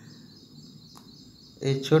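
Quiet room background with a single faint click about a second in, then a man's voice starts near the end.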